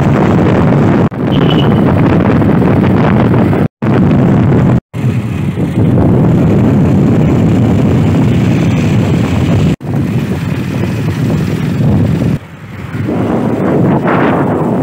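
Loud wind buffeting the microphone on a moving motorcycle, a steady rumbling noise broken by a few abrupt cuts. Near the end the noise drops to a lighter, higher hiss.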